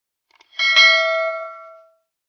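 A few faint mouse clicks, then a single bright bell ding from a notification-bell sound effect that rings out and fades over about a second.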